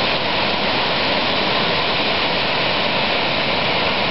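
A woodland stream cascading down a small rocky waterfall: steady roaring of rushing water.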